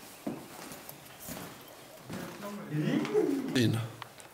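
A person's voice making low, wordless vocal sounds that slide down in pitch in the second half, ending in a short "yeah", after a faint knock about a quarter second in.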